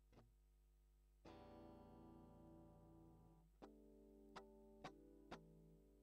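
Guitar played dry, straight into an audio interface's instrument preamp with no effects. A chord strummed about a second in rings for about two seconds, then comes a second chord and three short strums. Barely audible, because the preamp gain is set too low.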